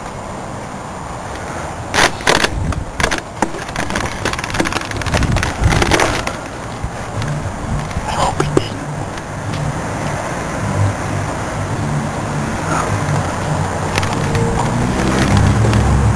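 Rustling and handling knocks on the microphone, then a low drone from a car that grows louder toward the end.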